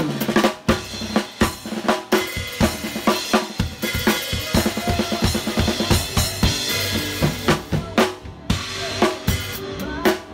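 Acoustic drum kit played in a fast, busy pattern: snare, bass drum, tom and cymbal hits struck with polycarbonate light-up drumsticks, over a play-along music track with a steady bass line.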